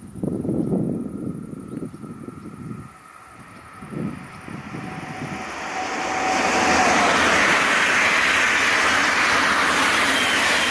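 Double-deck electric multiple unit passing at speed on overhead-wired main line. Uneven rumbling comes first, then a rushing of wheels on rail that swells about five seconds in and stays loud and steady to the end.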